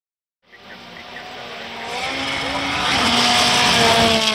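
Rally car engine, a Volkswagen Polo R WRC, approaching at speed on a gravel stage. It grows steadily louder and its note falls slightly near the end.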